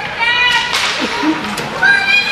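High-pitched shouts at an ice hockey game, one near the start and a rising one near the end, with a sharp crack about three-quarters of a second in and a lower voice calling out in between.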